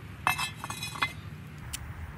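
Cast-iron Dutch oven hardware clinking: a sharp metallic clink with a brief ringing tone a quarter second in, a few lighter ticks, and a second clink about a second in.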